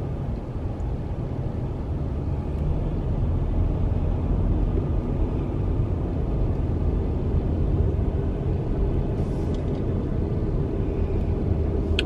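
Steady low rumble inside a car driving on a highway: road and wind noise heard from the cabin.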